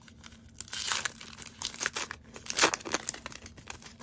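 A Garbage Pail Kids trading card pack wrapper being torn open and crinkled by hand, a run of irregular crackles, the loudest about two and a half seconds in.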